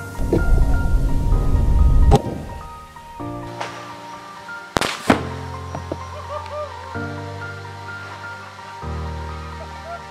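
Background music throughout, with a low rumble for the first two seconds that ends in a loud rifle shot, then a second sharp double bang about five seconds in as the peroxide-filled container blows apart into foam.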